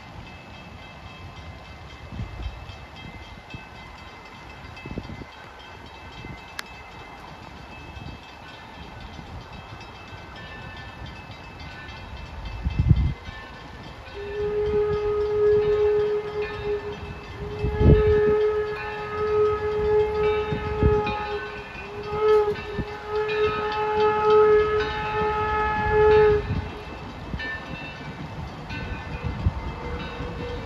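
Steam whistle of the approaching 1873 Mason Bogie locomotive Torch Lake, still out of sight: one long blast of about seven seconds starting about halfway in, then after a short break a brief toot and a longer blast. A few low thumps come in around the start of the whistling.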